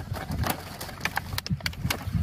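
Clear plastic strawberry clamshell containers being handled in a cardboard flat, giving a run of light clicks and crackles, most of them in the second half, over a low rumble.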